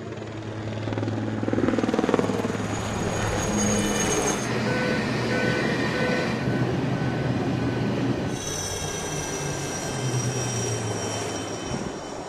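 Military aircraft turbine engines from a fly-past, helicopters and fixed-wing planes, running steadily with a thin high whine over a low hum. The sound changes abruptly about four and a half and eight seconds in.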